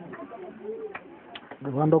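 People's voices: faint low talk and cooing-like vocal sounds, then a man's loud drawn-out call of "hey" near the end.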